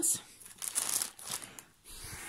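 Thin plastic mailing bag crinkling under a hand, in short irregular rustles.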